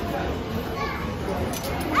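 Amusement arcade din: steady crowd chatter and machine noise with faint voices, and an excited high voice exclaiming right at the end.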